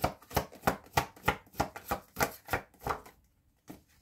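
Large tarot cards being shuffled by hand, packets of the deck slapping onto each other in a steady rhythm of about three a second. The shuffling stops about three seconds in, with one more tap near the end.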